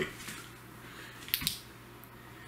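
A UV flashlight's push-button switch clicking on: a quick double click about one and a half seconds in, over a low steady hum.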